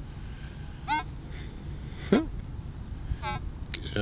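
Three short, pitched animal calls about a second apart, the middle one a quick upward sweep, over a faint steady background.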